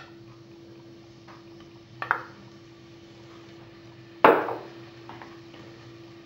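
Cookware knocking against a cooking pot as sliced shallots go in: a light clack about two seconds in and a louder clank a little past four seconds that rings briefly, with a few faint taps between, over a faint steady hum.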